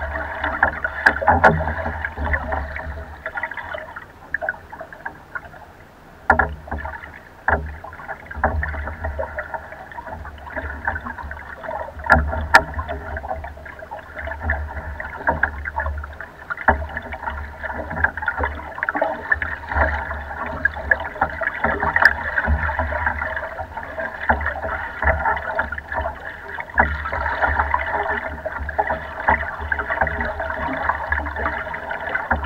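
Choppy lake water sloshing and splashing against the hull of a small wooden rowboat under way, with wind rumbling on the microphone. A few sharp knocks stand out, two of them close together about twelve seconds in.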